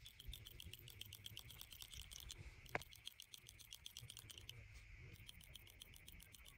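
Manual hand-squeezed hair clippers working fast through short hair, the blades clicking at several snips a second. Near the middle the clicking breaks off briefly, with one sharper click, before starting again.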